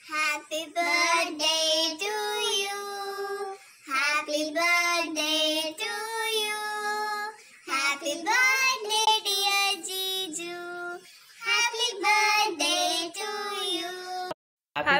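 A woman singing in a high voice, in phrases with short breaks between them.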